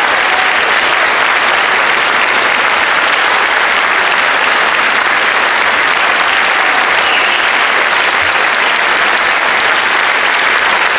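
Audience applauding steadily, a dense unbroken clapping at the close of an orchestra concert.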